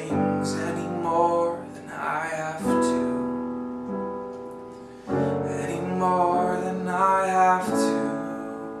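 Stage piano playing the closing chords of a slow song: three chords struck about two and a half seconds apart, each held and left to fade, with a few melody notes moving above them.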